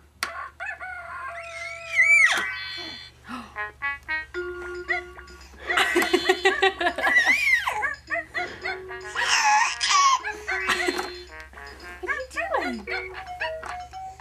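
Baby's electronic farm toy playing a simple beeping tune, its notes stepping up and down, broken by a few short, louder sound effects.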